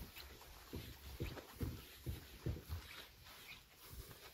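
Faint footsteps walking on grass, a run of soft thumps about two to three a second.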